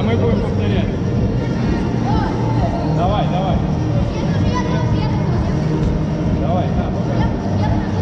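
Background music with a steady low bass line, with children's voices chattering over it.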